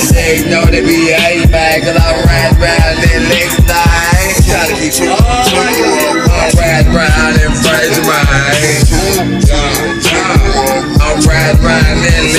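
Trap hip hop track: a beat of hard, evenly spaced drum hits and deep bass, with a wavering vocal line over it.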